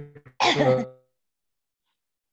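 A man laughing briefly: a few quick breathy pulses, then one louder laugh about half a second in.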